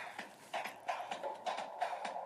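A sound effect between radio segments: a run of irregular knocks, about three or four a second, over a steady hiss in a narrow band, starting about half a second in.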